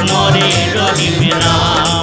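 Bengali devotional film song: singing over a steady, even percussion beat and bass accompaniment.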